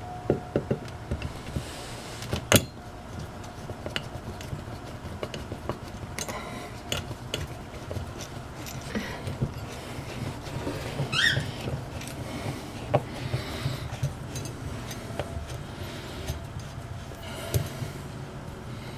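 Clicks, taps and scrapes of a metal fire-extinguisher mounting bracket and its coarse-threaded screws being handled and fitted into drywall, with one sharp click a few seconds in and a brief squeak about eleven seconds in, over a low steady hum.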